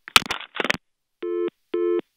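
Telephone busy tone heard over the line after a call is hung up: short beeps at about two per second, following a brief burst of noise.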